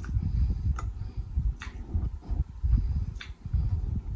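Close-miked chewing of noodles, with uneven soft wet mouth sounds and four sharp clicks spread through it.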